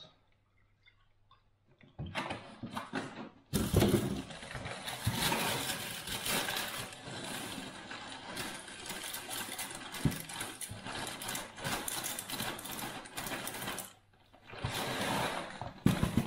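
Corn flakes poured from the box's plastic inner bag into a bowl of milk: a long rustling, rattling pour of about ten seconds, with a shorter burst near the end.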